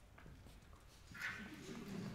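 Faint room tone in a concert hall, then a little over a second in, a short, rough human vocal sound.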